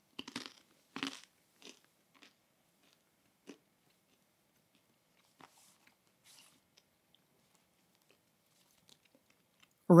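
Matzah being broken and chewed: a few faint, crisp crunches at irregular intervals, mostly in the first four seconds, with a few softer ticks later.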